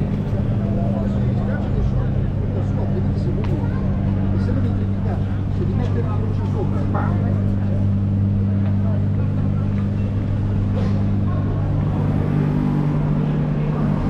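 City street sounds: indistinct background chatter of passers-by over a steady low hum of motor traffic.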